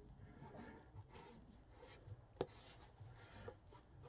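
Faint handling sounds of a cardboard action-figure box with a plastic window being turned by hand: soft rubs and scrapes, with one sharp tap about two and a half seconds in.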